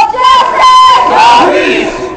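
A crowd of protesters shouting and chanting loudly together, with several voices overlapping and some calls drawn out.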